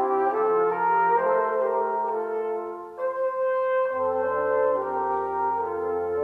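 Brass quintet of two trumpets, French horn, trombone and tuba playing a carol in slow, held chords. The music breaks off briefly about three seconds in, and a low tuba note joins the chords about a second later.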